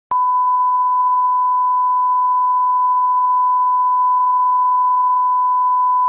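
Steady 1 kHz line-up reference tone of a bars-and-tone test signal: one unbroken, even beep.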